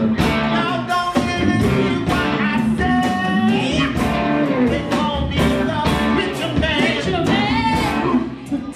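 Live rock band playing loudly: a singer's voice over electric guitar, electric bass and drums with a steady beat.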